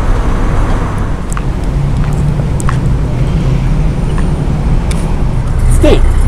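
Street traffic: a loud, steady low rumble of passing vehicles, with an engine hum in the middle.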